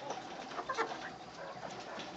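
Silkie chickens clucking quietly, a few short calls scattered through the moment.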